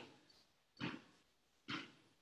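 A woman breathing audibly during a deep-breathing exercise, heard as three short, faint breaths a little under a second apart, each fading quickly.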